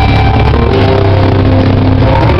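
A metallic crust punk band playing loud in a small room, with electric guitars, bass and drums in a dense, unbroken wall of sound.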